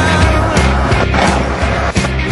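Rock music with a steady beat over the wheels of a wheeled canoe rolling on pavement.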